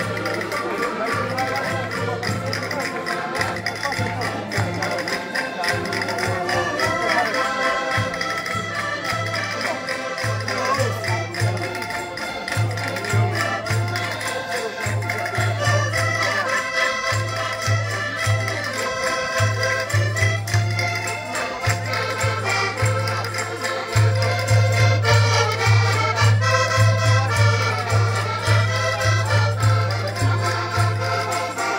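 Several accordions playing a tune together, with a rhythmic pulsing bass beat. The music is louder in the last few seconds.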